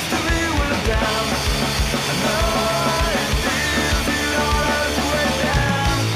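Punk rock song played by a full band: electric guitar, bass and a steady beat on the drum kit.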